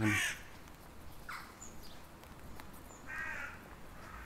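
A crow cawing outdoors, twice: a short call about a second in and a longer, harsher caw a little after three seconds.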